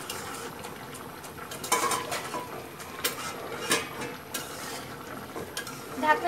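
Metal spatula stirring a thick curry in a metal karahi, scraping and clinking against the pan several times.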